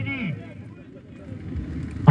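A man's spoken commentary trails off in the first moment, leaving a low, steady outdoor background rumble.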